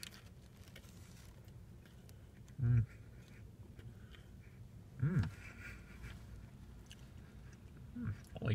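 A man faintly chewing a mouthful of sausage burrito with his mouth closed, humming "hmm" twice as he tastes it, the second hum bending up and down in pitch.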